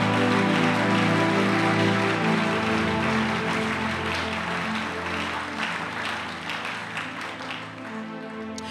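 Congregation applauding over music of sustained, held chords; the applause and the music gradually die down.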